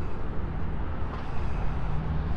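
Steady low engine rumble of a motor vehicle, with outdoor background noise.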